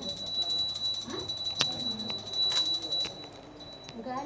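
A steady high-pitched ringing that fades after about three seconds, with two sharp clicks and faint voices underneath.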